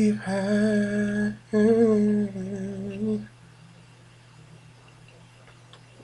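A man singing unaccompanied, holding two long, slightly wavering wordless notes over about three seconds. Then he breaks off for a pause, and only a faint steady low hum is left.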